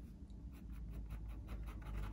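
Black fine-liner pen scratching a rapid series of short shading strokes on cold-press watercolour paper, faint.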